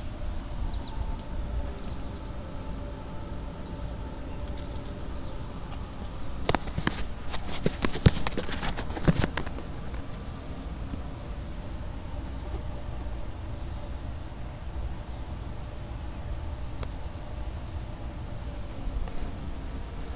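Zipper on a mesh pop-up butterfly enclosure being drawn open, with rustling of the netting: a run of quick clicks and scrapes lasting about three seconds near the middle. A steady high insect trill, like crickets, runs underneath.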